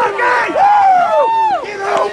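Sideline spectators yelling encouragement in long, drawn-out shouts, several voices overlapping and loud.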